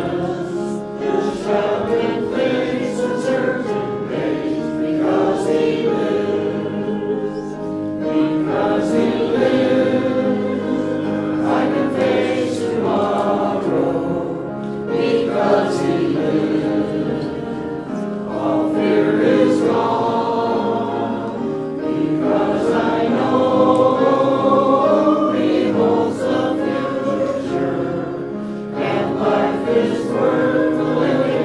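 A choir singing church music, continuous throughout.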